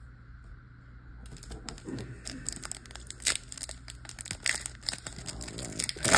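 Foil booster pack wrapper crinkling and tearing as it is handled and opened by hand, starting about a second in with many sharp crackles.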